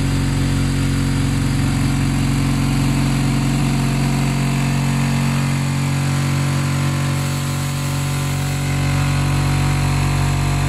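MIC-VP420 vertical powder packing machine running: a steady, loud motor hum from the machine as it stirs powder in its hopper.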